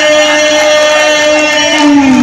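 A single steady, held pitched tone with many evenly spaced overtones, unbroken and unchanging in pitch; voices begin just before the end.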